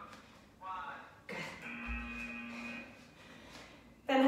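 Interval-timer signal from a laptop: a single held electronic tone of about a second, starting sharply just over a second in, marking the switch from a work interval to rest. It follows a brief vocal sound.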